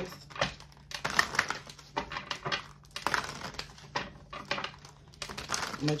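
A run of irregular clicks and taps from oracle cards being handled and shuffled on a table.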